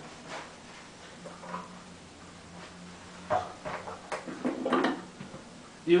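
Knocks and rattles of a microphone stand being handled and set in place: a sharp knock about three seconds in, then a few seconds of irregular clattering. Under it runs a steady low hum from a small switched-on guitar amplifier.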